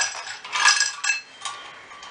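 Ice cubes clinking against a steel bowl and a glass as they are tipped into the glass: a few sharp clinks, the loudest at the very start and about two thirds of a second in, then lighter taps.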